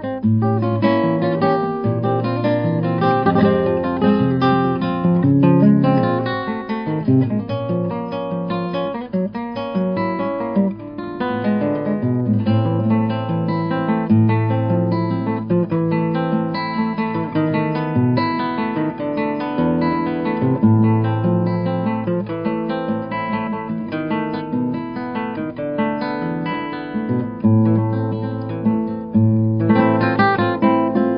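Solo classical guitar, fingerpicked: a steady flow of plucked melody and arpeggio notes over ringing bass notes.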